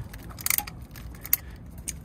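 Ratchet wrench turning the threaded screw of a BAL X-Chock scissor wheel stabilizer, a few sharp metallic clicks, the loudest about half a second in. The chock is being tightened so that it grips and locks the two tandem trailer tires.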